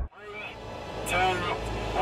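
Car engine running at speed, heard from inside the cabin as a steady low rumble with road noise. A man's voice speaks briefly about a second in.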